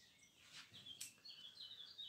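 Near silence, with a few faint, high chirps of a small bird in the background.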